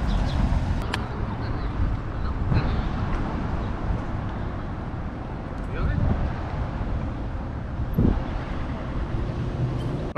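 City street traffic noise with a steady low rumble, heard while riding an e-bike through an intersection, with a few brief knocks.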